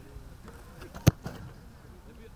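A single sharp thud of a football being struck, about a second in.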